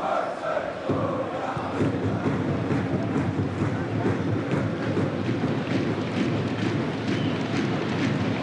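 Football crowd in the stadium stands chanting together, coming in strongly about a second in and carrying on steadily.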